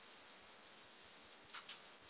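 Faint steady hiss from an open microphone on a video call, with a short rustle about a second and a half in.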